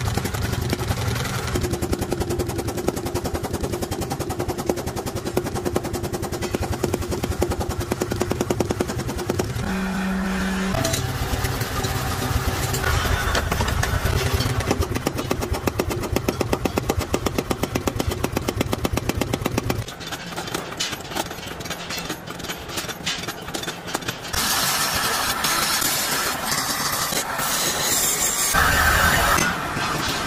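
Mechanical forging power hammer pounding a red-hot trowel blade with rapid, regular blows for about the first twenty seconds, then quieter, sparser knocking.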